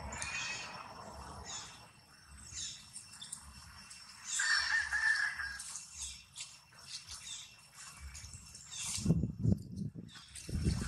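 Birds chirping and calling repeatedly in the background, with one louder, longer call about four to five seconds in. A few low thumps come near the end.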